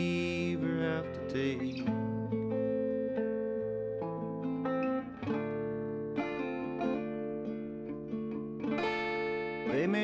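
Archtop guitar picked through an instrumental passage of ringing single notes and chords between sung lines. A man's singing voice comes back in near the end.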